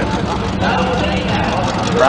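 A vehicle engine idling steadily as it warms up, with spectators' voices over it.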